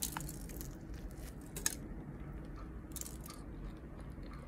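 Biting into and chewing an everything bagel sandwich with salmon cream cheese and lettuce, heard faintly, with a few soft crunches, the sharpest one about a second and a half in.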